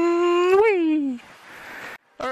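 A long howl-like call, held on one note, then briefly rising and sliding down as it fades, with a small click just before the rise.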